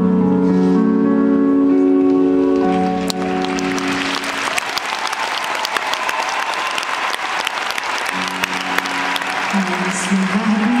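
Sustained chords from the stage orchestra and band ring out and end about three seconds in, and large-crowd applause rises and carries on. Low held notes from the stage come back under the applause about eight seconds in.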